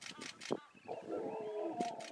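Male lions growling and snarling in a territorial fight. A rough, pitched growling starts about a second in and carries on, after a few short sharp sounds in the first half second.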